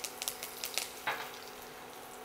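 Curry leaves crackling in hot ghee with cumin seeds in a steel kadai: scattered sharp pops in the first second or so, thinning to a faint sizzle.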